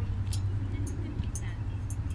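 Steady low rumble with four faint, light clicks about half a second apart.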